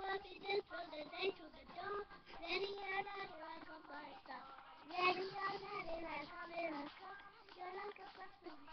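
A young girl singing a pop song solo, in phrases with held notes.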